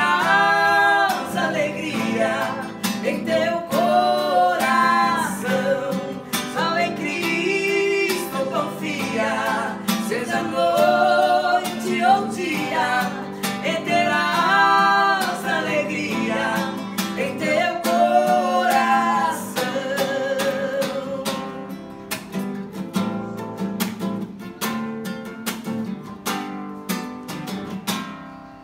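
Classical nylon-string guitar strummed as accompaniment to a sung hymn. The singing stops about twenty seconds in, and the guitar plays on alone, softening toward a final strum at the end.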